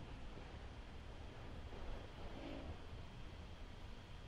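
Faint room tone: a low, steady hiss with a hum underneath.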